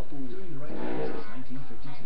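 A man's voice making a drawn-out, growling, sung rock-star sound rather than ordinary talk.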